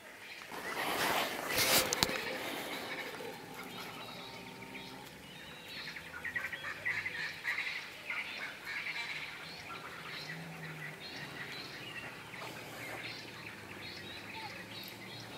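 Wild animal calls: runs of quick repeated high notes between about five and ten seconds in, over steady outdoor background noise. A loud rushing burst of noise comes about one to two seconds in.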